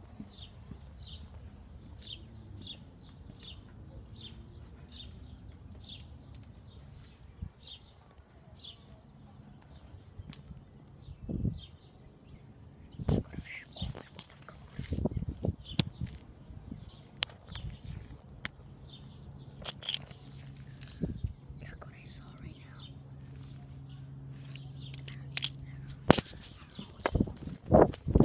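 A small bird chirping over and over, about two short high chirps a second, for the first ten seconds or so. After that, scattered knocks and rustles of a handheld phone moving about, and a steady low hum comes in about two-thirds of the way through.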